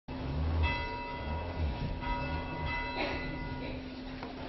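A church bell ringing, struck about three times, each stroke ringing on and slowly fading.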